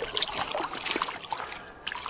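Brown trout thrashing in a landing net at the water's surface: irregular splashes and slaps of water, thinning out in the second half.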